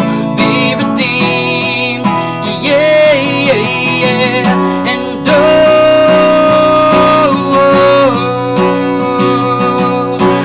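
A man singing solo over his own strummed acoustic guitar, his voice wavering in vibrato. He holds one long note from about five seconds in until about eight seconds, stepping down in pitch near its end.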